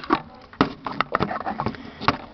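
Handling noise from a camera being swung around by hand: a few scattered light clicks and knocks.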